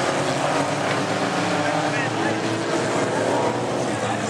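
Engines of several small hatchback race cars running at speed on a dirt track. The mixed, wavering engine note holds steady throughout, heard from the spectator side.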